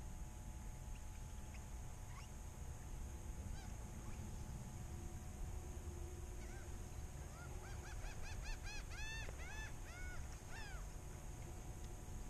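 Birds calling in a run of short honking calls, a few a second, starting about six seconds in and stopping shortly before the end, over a low steady rumble.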